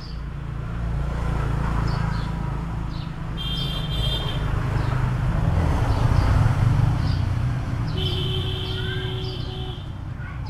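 A motor vehicle's engine rumbling nearby, growing louder to a peak about two-thirds of the way through and then fading, with short high bird chirps over it.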